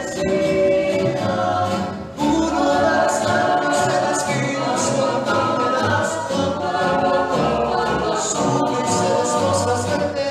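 A rondalla performing: mixed voices singing in harmony, with guitars and a double bass. There is a brief dip about two seconds in, then the ensemble comes back in fuller.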